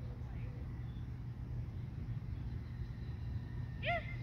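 Steady low outdoor rumble, with one short high call that rises and falls just before the end.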